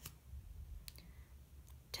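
Quiet room with a low hum and a few faint, brief clicks: one about a second in and a couple more near the end.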